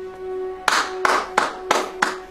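Hands clapping, starting a little way in and going on at an even pace of about three claps a second, the applause for a finished speech. Soft background music with a held string note runs underneath.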